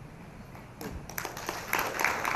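Audience applause starting about a second in and quickly growing louder.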